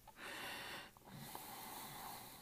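Two faint breaths close to the microphone, the first short and the second longer, with a light click between them.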